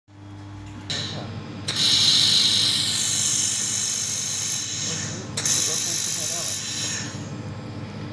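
Handheld fiber laser welder running along a seam in sheet metal: a loud steady hiss of shielding gas and the weld starts about two seconds in, breaks off briefly about five seconds in, then resumes. A low steady machine hum runs underneath.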